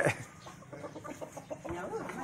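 A faint run of short, quick animal calls, about six a second, following the tail of a loud voice.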